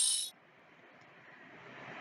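The end of a bright, high, chiming sound effect made of several ringing tones, cutting off about a quarter of a second in, followed by faint hiss.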